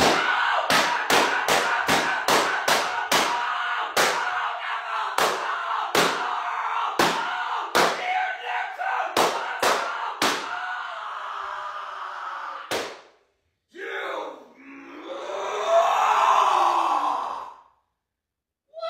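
A rapid run of sharp impacts, two to three a second, slowing and stopping about ten seconds in, over a continuous distressed voice. Near the end comes a long, rising and falling yell.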